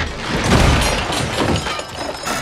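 A jumble of household objects tumbling out of an opened cupboard and crashing down together. The clatter is loudest about half a second in, with smaller crashes after it, and it tails off near the end.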